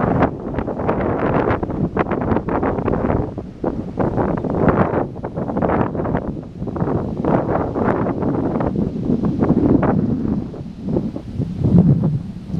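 Wind buffeting the microphone heavily over the rumble of a freight train hauled by VL11 electric locomotives as it approaches and passes close by.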